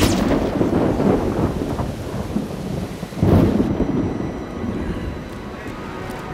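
Thunderclap over steady rain: a sharp crack that rolls into a rumble, then a second heavy clap about three seconds in, with the rain hissing on.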